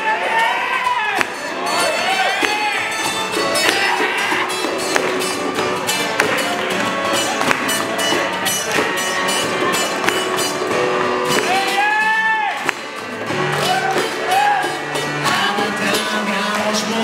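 A live acoustic band playing: acoustic guitar strumming, Hammond SK1 keyboard and hand drums in a steady rhythm. A voice comes in over it in short phrases near the start and again about twelve seconds in.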